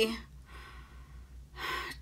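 The tail of a woman's spoken word, a short pause, then an audible in-breath about one and a half seconds in.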